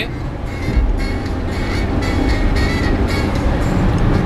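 Steady low rumble of road and engine noise inside a car's cabin at motorway speed, with music with a beat playing over it.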